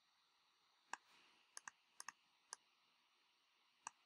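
Computer mouse clicking: about seven short, faint clicks at uneven intervals, with two quick double clicks in the middle, against near silence.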